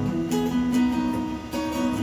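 Strummed acoustic guitar chords with held notes, playing on between sung lines.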